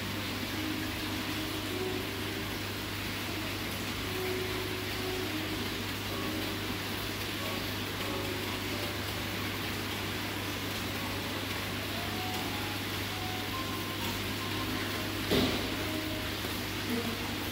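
Steady low hum and hiss of an aquarium's aeration, an air pump feeding a bubbling airstone, with one brief knock near the end.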